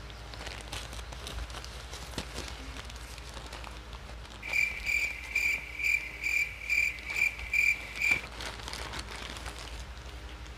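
Soft rustling and handling of a plastic mailer bag. Around the middle comes a run of about nine short, high chirps, evenly spaced at two or three a second and louder than the rustling.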